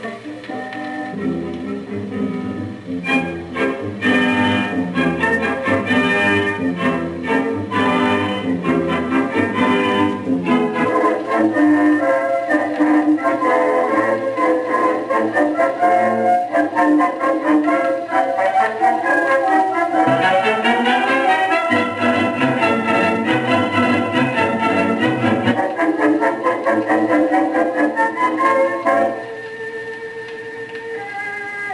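Exhibit playback of a 1920s orchestra recording of a popular tune, one of a pair made in the same studio and year, one acoustically into a recording horn and one electrically with a microphone, played for comparison. The sound grows brighter and fuller in the upper range about twenty seconds in.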